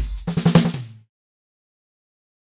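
Sampled acoustic drum kit playing a short fill: a quick run of drum hits over kick, ending about a second in.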